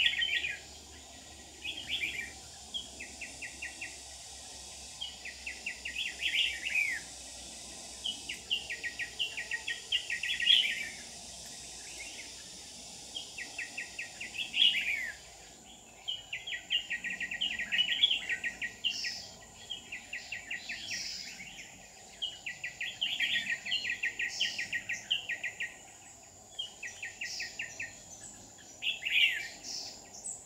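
Red-whiskered bulbul singing: short phrases of quick repeated notes and sweeping whistles, one after another with brief pauses. A steady high-pitched hiss runs underneath and fades about halfway through.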